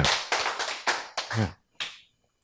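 A quick, irregular run of sharp claps that dies away after about a second.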